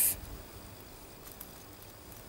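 A spoken word ends at the start, then a pause holding only faint, steady background noise.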